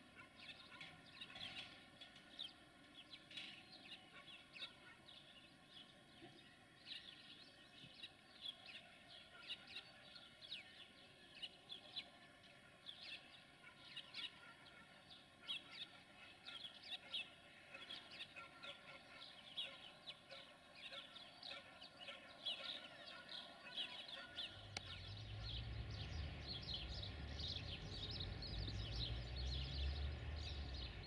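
Birds chirping over and over, faintly. About 25 seconds in, a low rumble comes in and grows louder.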